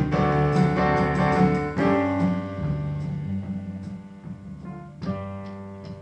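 Live small-band music led by electric keyboard chords, ringing on and dying away; the playing gets steadily quieter, with fresh chords struck about two and five seconds in.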